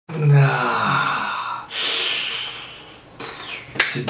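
A man's wordless vocal groan, falling in pitch, followed by a long breathy exhale and a fainter breath near the end.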